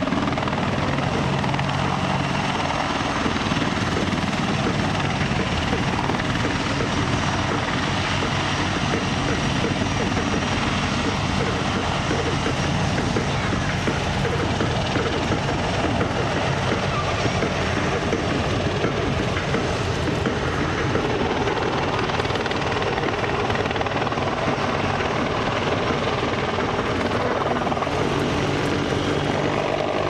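AH-64D Apache attack helicopter flying a manoeuvre display overhead: the rotor and twin turboshaft engines give a steady, unbroken noise throughout.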